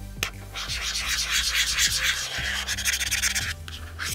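Utility knife blade scraping across the textured glass back of a Samsung Galaxy Fold 3: a steady rasping scrape lasting about three seconds.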